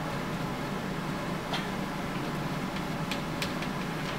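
Classroom room tone: a steady low hum, with a few faint clicks about one and a half seconds in and again after three seconds.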